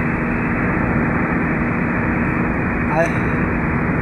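Car cruising on a highway, heard from inside the cabin: a steady rush of road noise with a low hum underneath.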